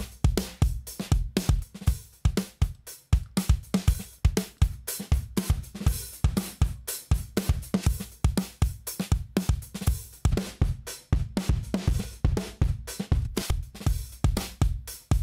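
UJAM Virtual Drummer BRUTE software drummer playing a rock drum-kit groove at 96 bpm: kick, snare, hi-hats and cymbals in a steady pattern. Its mix preset is switched from Bounce to Bite to Wide during playback, changing the tone of the kit.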